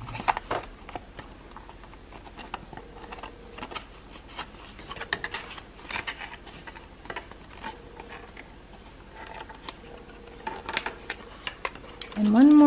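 Paper being folded and creased by hand: irregular soft crackles and clicks as the flaps of a printed paper building model are bent along their fold lines.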